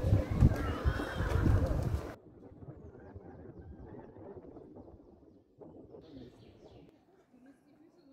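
Wind buffeting the microphone in gusts, with a few short bird chirps, cut off abruptly about two seconds in; then faint outdoor background.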